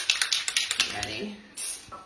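Aerosol spray-paint can being shaken, its mixing ball rattling in rapid clicks for about the first second, then a short hiss of spray near the end.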